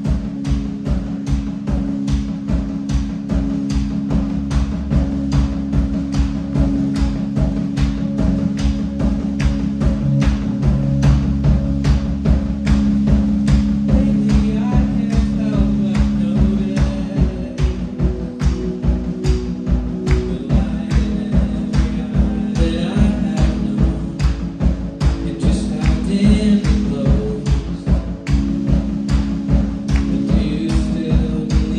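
Live rock band playing: a steady drum beat, about three strokes a second, under sustained low bass and keyboard chords. A lead vocal comes in about halfway through.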